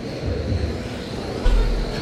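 Electric RC short-course trucks running on an indoor track, a steady hum with a faint high whine. A deep low thump comes about one and a half seconds in and is the loudest sound.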